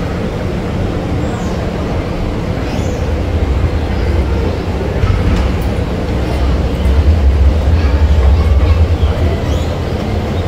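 Escalator running: a steady low rumble with a faint hum over it, growing louder about seven seconds in as the ride nears the bottom landing.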